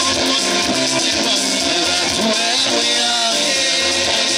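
Music with singing over an instrumental backing, running at a steady, loud level.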